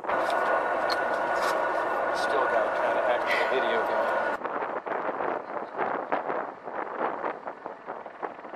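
Indistinct voices over a steady tone for about four seconds, cut off suddenly, then wind buffeting the microphone.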